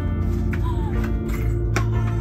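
Film-score music with sustained low notes, and a few light knocks over it, the sharpest near the end.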